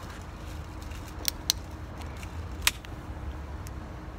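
A just-opened aluminium drinks can being handled, giving three sharp light clicks, about a second in, again shortly after, and near three seconds, over a steady low background rumble.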